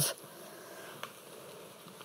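Faint room tone with a light steady hiss, and one soft click about a second in.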